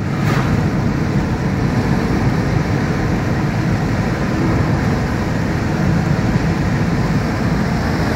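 Steady road noise of a moving car heard from inside its cabin: engine and tyre rumble.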